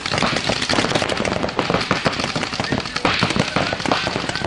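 Paintball markers firing in fast strings, a dense, unbroken crackle of sharp pops.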